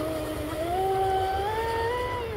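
Whine of a fast electric RC boat's brushless motor running at speed. Its pitch steps up about half a second in and rises again near the end as the throttle changes.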